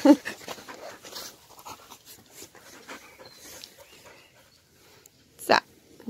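Australian Shepherd puppies panting close to the microphone, with soft irregular rustles as they clamber over the person holding it.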